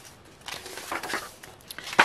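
Rustling of thick, somewhat glossy book pages being handled and turned, a few soft swishes of paper with a sharper one near the end.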